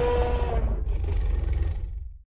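Film sound-effect dinosaur roar tailing off, its pitched part fading about half a second in, leaving a deep rumble that cuts off just after the end.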